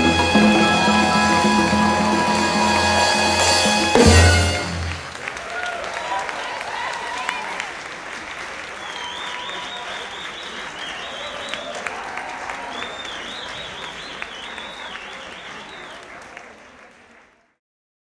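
A live salsa band (flute, trombone, timbales, guitar, bass) holds its final chord and ends on a loud closing hit about four seconds in. Audience applause and cheering follow, fading out near the end.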